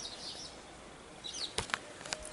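Glossy sticker cards being handled and flipped, giving a few sharp clicks about one and a half seconds in, over a faint hiss of breeze. Just before the clicks a bird chirps briefly.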